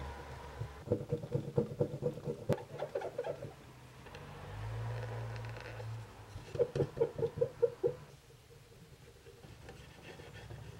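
Cotton swab scrubbing hard along the soldered seams of a glass box, working copper patina into the solder: quick back-and-forth strokes, about four or five a second, in two bouts, a longer one near the start and a shorter one about seven seconds in. A single sharp click comes between the strokes early on.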